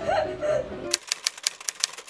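Quick run of typewriter key clicks, about eight in a second, a typing sound effect. In the first second a voice and music are heard before the clicks begin.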